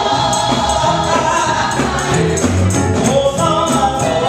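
Live gospel vocal group singing together in harmony, backed by a band with electric guitars, bass and drums. High percussion strikes mark a steady beat throughout.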